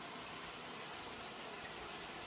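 Faint, steady hiss of broccoli rabe simmering in broth in a sauté pan on the stove.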